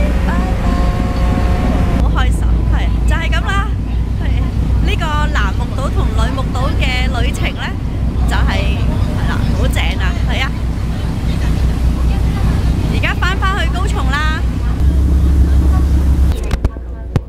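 Passenger ferry's engine rumbling low and steady, growing louder near the end as the boat gets under way, with people talking over it. A few held tones sound briefly at the start.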